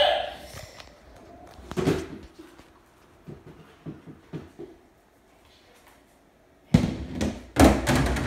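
Knocks and thuds from a home skee-ball machine as a game starts: a single knock, then a run of light knocks as the wooden balls come loose. Near the end there are two loud bangs with a brief rolling rumble after them.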